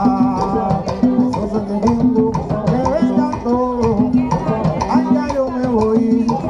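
Live Afro-Cuban rumba: conga drums and hand percussion playing a steady, dense groove.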